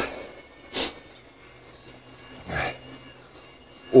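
Two short breaths from a man pedalling an e-bike, picked up close on a chest-worn clip microphone: a sharp one about a second in and a softer one past the halfway point, over a faint steady hum.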